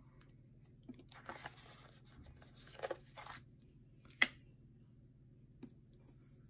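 Paper sticker strip being peeled from its backing and handled: a few short, papery tearing and rustling sounds, then a single sharp tap a little after four seconds in.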